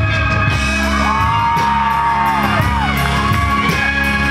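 Live rock band playing: drums with regular cymbal strokes, guitars and bass, and a long held lead line that bends up and down in pitch through the middle.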